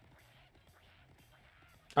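Near silence with faint, distant-sounding voices underneath, then a man starts talking loudly right at the end.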